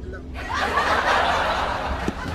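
Breathy snickering laughter close to the microphone, starting about half a second in.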